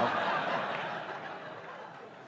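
Audience laughing at a punchline, the laughter dying away over the two seconds.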